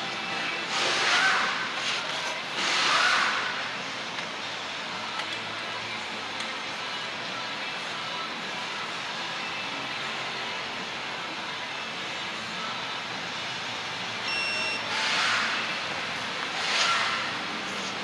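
Digital torque wrench tightening a knock sensor bolt in a few short spells of ratcheting. About fourteen seconds in comes one short high beep, the wrench's signal that the set 15 ft-lb torque has been reached.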